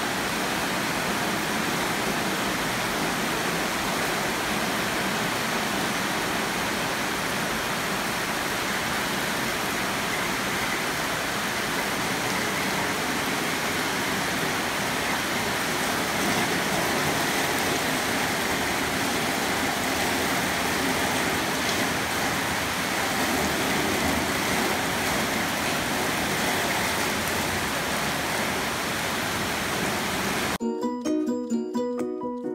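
Steady rain falling on roofs and trees, an even hiss throughout.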